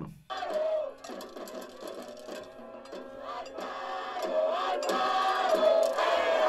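A rally crowd chanting and shouting a cheer in unison, getting louder toward the end.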